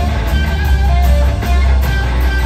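Live blues-rock band playing an instrumental passage: held electric guitar notes over heavy bass and drums, loud through the concert PA.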